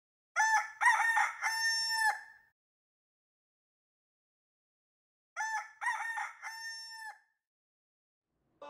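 A rooster crowing cock-a-doodle-doo twice, each crow a quick run of notes ending in one long held note. The second crow comes about five seconds after the first and is a little quieter.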